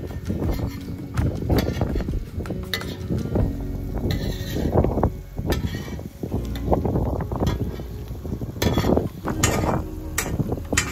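A metal spatula and slotted spoon scraping and clinking against a large, shallow steel pan as fritters are stirred and turned, in irregular strokes.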